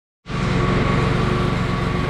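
A machine running steadily: a continuous hum with a fast, low throb and a faint steady whine, starting abruptly just after the beginning.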